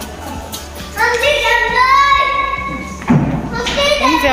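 Music with a high singing voice in long, gliding held notes, and a single thump about three seconds in.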